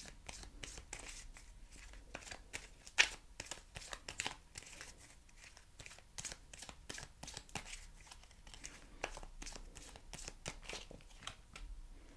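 A deck of tarot cards being shuffled and handled by hand: a run of soft, irregular card flicks and slides, with a sharper snap about three seconds in and another a second later.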